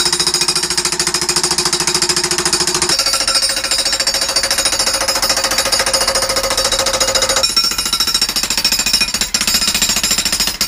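Hilti TE 3000-AVR electric jackhammer breaking up a concrete slab: a loud, continuous rapid hammering of the chisel bit into the concrete. The ringing pitch of the hammering shifts about three seconds in and again after seven, and the hammering dips briefly near the end.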